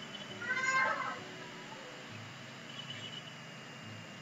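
A short, high-pitched animal call that rises and falls, about half a second in, then a fainter, shorter call near the three-second mark, over low room hiss.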